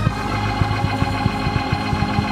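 Live church band music in a gap between sung lines: a held chord on a keyboard instrument over drums.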